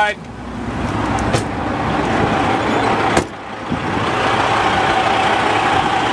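Rushing handling and movement noise as someone climbs down out of a semi-truck's cab, swelling over the first second, with a sharp knock about three seconds in.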